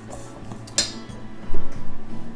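A utensil clinking and scraping against a stainless steel mixing bowl while a crumbly topping is stirred, with a sharp clink a little under a second in. A heavy thump follows about a second and a half in.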